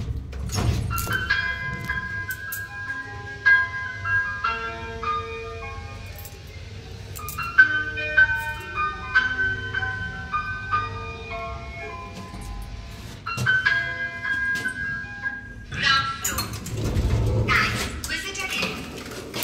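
A passenger lift's electronic tune, a simple melody of clean single notes in a short phrase that repeats, playing while the cabin travels. It stops shortly before the end and gives way to louder noise.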